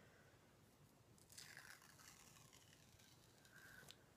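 Near silence: room tone, with a faint brief rustle about a second and a half in.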